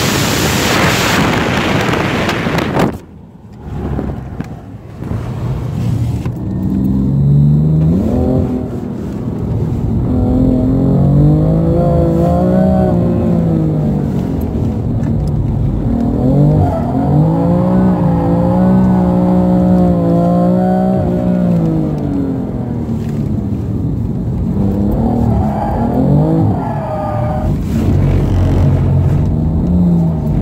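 Wind buffeting the microphone for the first three seconds or so. Then a BMW M3's engine is heard from inside the cabin, driven hard on a track lap, its note rising and falling again and again as it revs up and comes off the throttle.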